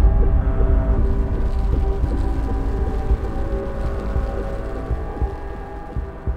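Cinematic logo-sting sound design: a deep rumble dying away under a sustained droning chord, fading steadily, with a few soft low thumps like a heartbeat near the end.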